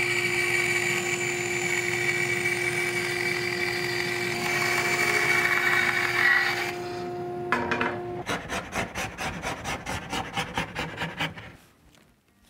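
Grizzly bandsaw running and ripping through a plywood panel, a steady sawing noise over the motor's hum. About seven seconds in the cut ends and the hum stops soon after, followed by a fast, even run of ticks for a few seconds that fades out just before the end.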